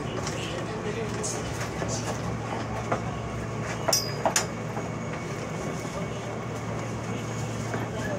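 Seoul Subway Line 2 train slowing into a station, heard from inside the car: a steady rumble of wheels and running gear over a low hum. A few sharp clicks come near the middle, with a brief high squeal about four seconds in.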